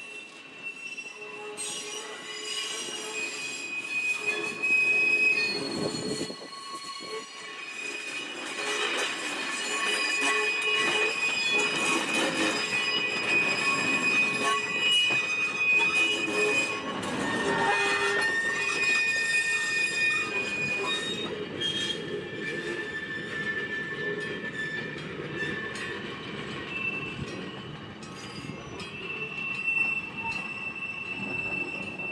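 Steel wheels of a slow-moving electric railcar and its trailing baggage car squealing on curved track. Several high squeal tones come and go and shift in pitch through the pass, loudest in the middle, over a steady rumble of wheels on rail.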